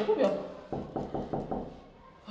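Knuckles knocking on a metal apartment entry door: a quick, even run of about five knocks.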